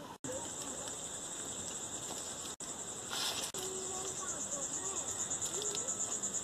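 Insects chirring outdoors: a steady, high-pitched trill pulsing rapidly, like crickets, with a brief hiss about three seconds in and faint voices underneath.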